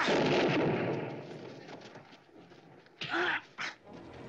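A gunshot from a western film soundtrack: one loud sudden bang that fades over about a second and a half. Near the end come two short vocal cries.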